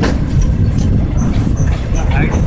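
Indian Railways express train running, heard from aboard: a steady low rumble of the carriages on the track, with a few faint short high chirps now and then.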